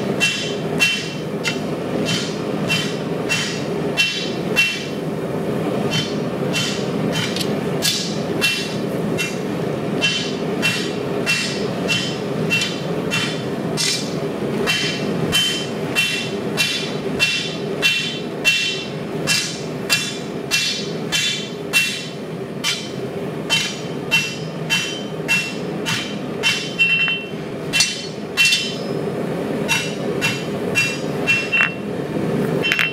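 Blacksmith's rounding hammer striking red-hot 80CrV2 bar stock on a steel anvil, about two blows a second with brief pauses, each blow with a bright metallic ring. This is hand forging that moves the steel to rough out a knife blade. A steady low rushing noise runs underneath.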